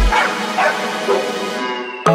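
Breakdown in an electronic dance track: the bass and beat drop out, leaving sustained synth chords with a few short sounds falling in pitch, bark-like enough that they could be a sampled dog. The music grows gradually quieter through the break.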